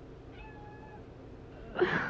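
A faint, high, thin cry held steady about half a second in, then a much louder, sharper cry near the end.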